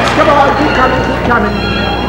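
Voices over music, with a wavering cry near the start.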